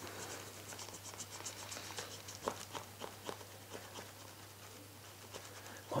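White eraser rubbing against a glossy plastic Ghostface mask, working off black scuff marks: faint, quick, irregular scratchy strokes.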